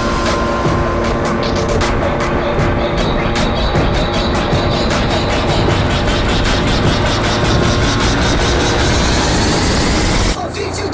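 Background music mixed over a Honda CBR125 motorcycle running at road speed.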